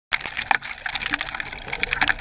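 River water heard through a microphone submerged in the stream: a rushing, watery hiss with a dense crackle of small clicks.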